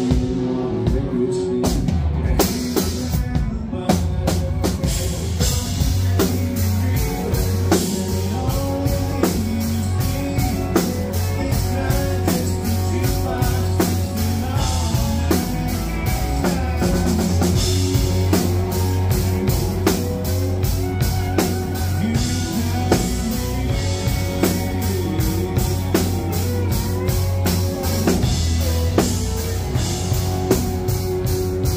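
Live band playing a country song on acoustic and electric guitars over a drum kit keeping a steady beat.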